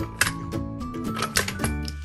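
Background music with a few sharp clicks of wood on wood as a wooden toy fire truck is drawn out of a wooden toy garage.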